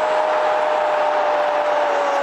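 An Arabic football commentator holding one long, steady-pitched shout over a cheering stadium crowd, calling a goal.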